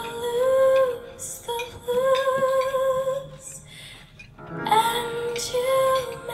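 A woman singing a show tune into a handheld microphone, holding long notes, some with vibrato, in three phrases with a short break about four seconds in.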